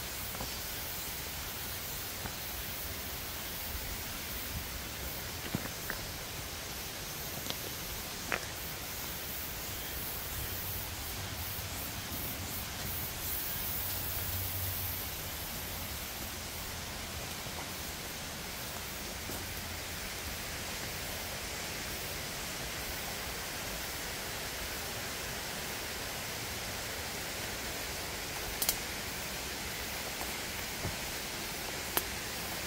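A steady, even hiss of outdoor background noise in a forest, with a few faint scattered clicks. The clearest click comes near the end.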